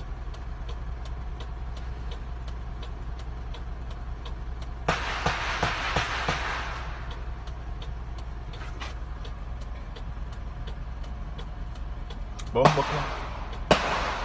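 Steady low rumble of a running motor vehicle with a light ticking about three times a second. A loud rush of noise rises about five seconds in and fades over two seconds.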